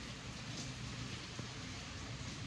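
Heavy thunderstorm rain falling steadily, heard as an even hiss.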